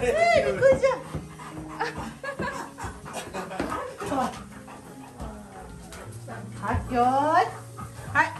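Golden retrievers vocalizing excitedly as they play rough with a person, with a short pitched call that bends up and down at the start and another near the end, over background music.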